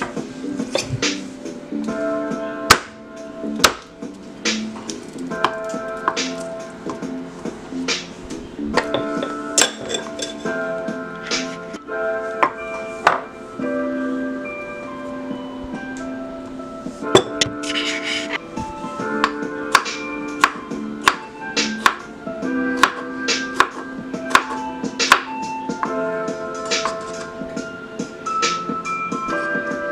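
Instrumental background music with held notes, over irregular sharp knocks of a chef's knife chopping vegetables on a bamboo cutting board.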